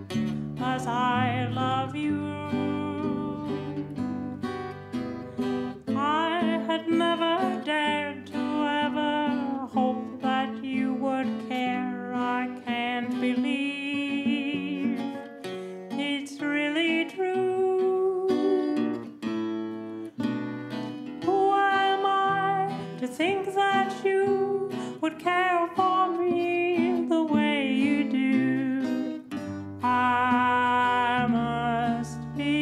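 Early-20th-century-style song played on acoustic guitar: a picked, wavering melody over a steady bass line, with notes plucked throughout.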